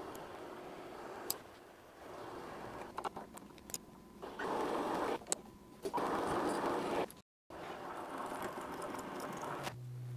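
Milling machine spindle running with a drill bit boring through a metal handle held in the vise, louder in two stretches near the middle while the bit cuts, with a few sharp clicks.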